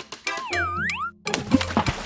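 Cartoon boing sound effect, a springy tone that dips in pitch and swoops back up, about half a second in, over cheerful children's background music.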